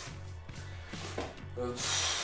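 Quiet background music with a steady low hum underneath, and a short hiss near the end.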